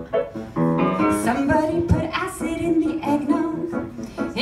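A woman singing live into a microphone, moving through several notes and then holding one long note through the second half.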